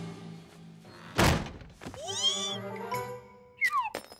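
Cartoon sound effects over background music: one loud thunk about a second in, then whistle-like tones sweeping up and down, and two quick falling swoops with a click near the end.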